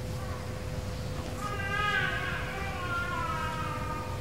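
A high-pitched, drawn-out vocal cry that begins about a second and a half in and slowly falls in pitch, over a steady electrical hum.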